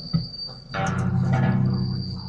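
Electric guitar strings sound again about a third of the way in and ring on as the song closes. Underneath is a thin, steady, high-pitched whine that drops out for about a second after the strings sound.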